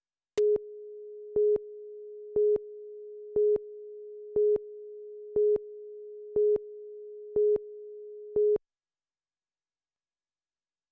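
Broadcast tape countdown leader: a steady electronic tone with a louder beep once a second, nine beeps in all, cutting off suddenly about a second and a half before the end.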